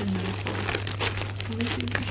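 Glossy plastic packaging bag and tissue paper crinkling and rustling as hands handle them inside a box, a continuous run of fine crackles.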